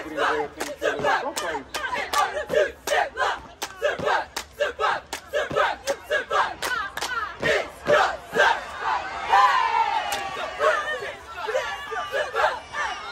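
Cheerleading squad chanting a cheer in unison, with sharp claps and stomps keeping a steady beat about two to three times a second. Around nine seconds in, a long falling yell.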